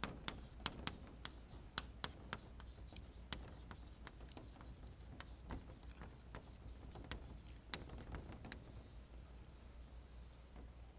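Chalk on a chalkboard as a heading is written: a quick run of sharp taps and short strokes, thinning out after the first few seconds. A longer scratchy stroke comes near the end.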